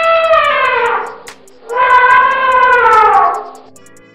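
Elephant trumpeting twice: two long calls, each sliding down in pitch at its end, the first ending about a second in and the second lasting from about two to three and a half seconds in. Faint background music with a ticking beat runs underneath.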